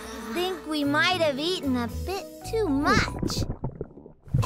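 Cartoon soundtrack: background music with wordless, sing-song vocal sounds that keep rising and falling in pitch, dying away about three seconds in.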